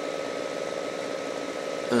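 Steady hum of room background noise with no change, as from a fan or air conditioner; a man's voice starts at the very end.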